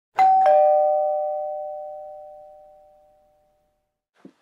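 A two-note ding-dong chime: a higher note, then a lower one a moment later, both ringing on and fading away over about three seconds.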